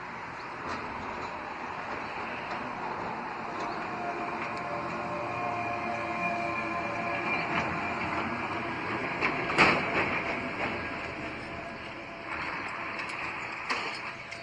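A wheeled excavator drives past, its diesel engine and a steady whine building as it nears, with a sharp metallic clank at the loudest point about two-thirds of the way through.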